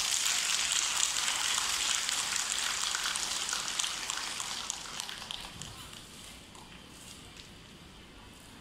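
Audience applauding, strongest at first and dying away over about six seconds.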